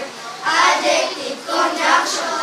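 A group of young schoolchildren singing together, breaking off briefly just after the start before the next line.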